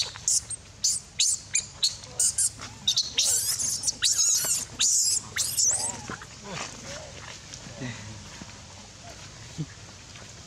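Infant macaque screaming: a rapid string of short, shrill squeals, loudest over the first six seconds, then thinning to a few fainter cries.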